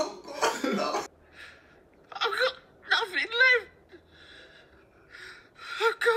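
Short bursts of a person's voice separated by brief pauses.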